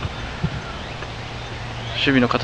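A pause in speech, filled with steady outdoor background noise and a low hum, with one faint short sound about half a second in.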